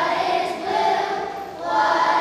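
A group of young children singing together, holding long notes; one phrase tails off about a second and a half in and the next begins near the end.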